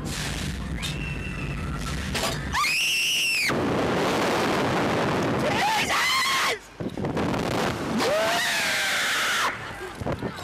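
Riders on a reverse-bungee slingshot ride screaming as they are flung into the air, with wind rushing over the on-board microphone. A low rumble gives way about two and a half seconds in to a long scream, followed by more long screams later, and the rushing wind fills the gaps between them.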